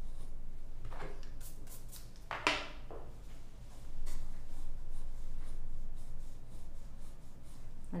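Graphite pencil strokes scratching across drawing paper as a circle is sketched, a few short strokes in the first three seconds and lighter ones after, over a steady low hum.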